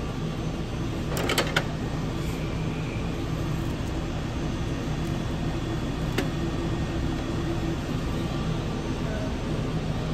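Steady hum of commercial kitchen equipment and ventilation at a fast-food prep line. A short run of clicks comes about a second in, and a single sharp click at about six seconds.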